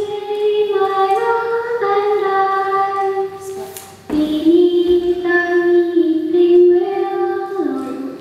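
A child's high voice singing slow, sustained notes in two long phrases, with a short break for breath about four seconds in.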